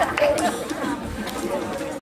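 Audience chatter: several voices talking at once, with no music playing.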